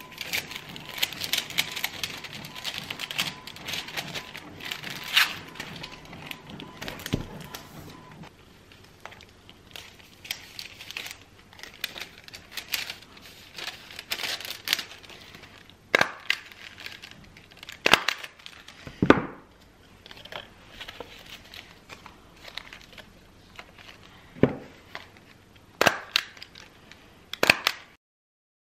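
Clear plastic sticker bags and sticker sheets crinkling and rustling as stickers are handled and slipped into the bags, dense for the first several seconds, then scattered sharp crackles and taps.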